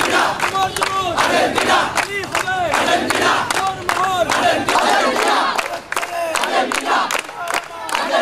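A large crowd of young men chanting and shouting together, with many hands clapping along.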